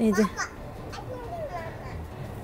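A woman speaks two words at the start, then faint voices in the background, with short rising and falling pitches.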